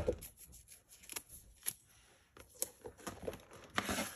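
Faint handling of a roll of washi tape: the strip is unrolled and pressed onto a board, with a few light clicks and taps scattered through it.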